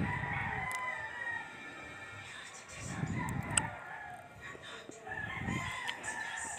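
Rooster crowing twice in the background: a long drawn-out, slightly falling call over the first two seconds, and another beginning about five seconds in.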